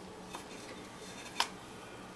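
Light handling clicks of kitchen utensils or containers, two short clicks about a second apart with the second louder, over a faint steady hum.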